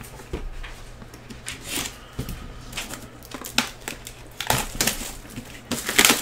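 Cardboard trading-card boxes being lifted off a stack and handled: intermittent crinkling and rustling with several light knocks and scrapes.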